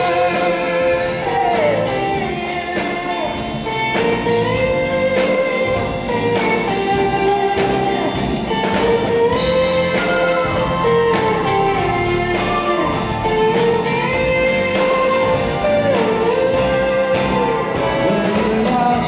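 Live rock band playing an instrumental passage between sung verses: a bending lead melody over electric guitar, drums and keyboards, with voices in the backing.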